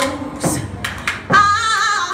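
Live band singing a largely unaccompanied vocal passage, a woman's voice leading, over sharp hand claps that keep the beat. The held, wavering sung note comes in about two-thirds of the way through.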